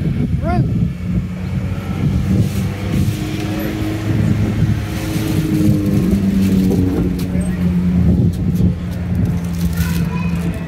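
A steady low mechanical hum at a constant pitch, like an idling vehicle engine, with indistinct voices over it and a short pitched cry about half a second in.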